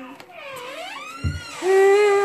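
A voice-like call that swoops down and back up in pitch, then a louder tone held steady from about one and a half seconds in, with a dull thump just before it.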